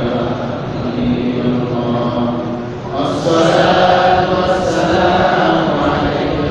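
A man's voice chanting in long, drawn-out melodic notes. A louder, higher phrase begins about halfway through.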